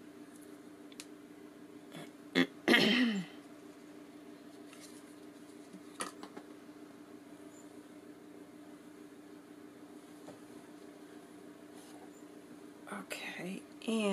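Quiet tabletop crafting over a steady low hum: faint taps and rustles as paper and a strip of ribbon trim are handled and laid on a card. A brief louder vocal sound, falling in pitch, comes about three seconds in.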